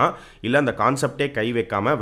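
Speech only: a man talking, with a short pause just after the start.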